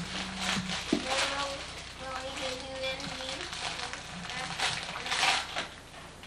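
Indistinct voices in a room, with a burst of rustling about five seconds in.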